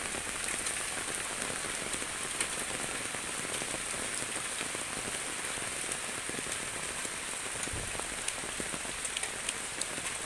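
Steady rain falling, an even hiss with scattered sharp ticks of single drops landing close by.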